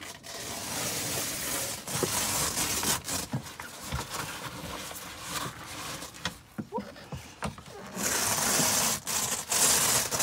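Canvas rustling and scraping with scattered knocks and bumps as someone climbs about inside a Toyota Troopcarrier pop-top camper and handles the raised roof's canvas. A louder, hissier rustle sets in about eight seconds in.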